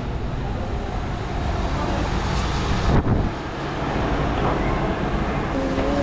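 Steady low rumble and hiss of vehicle road noise, with a short loud thump about three seconds in, after which the sound changes abruptly.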